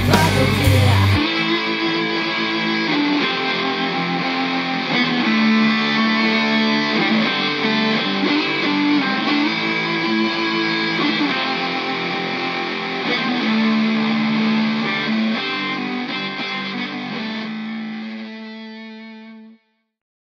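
Instrumental outro of a rock song: the heavy full-band section stops about a second in, leaving guitar playing held chords that fade out near the end.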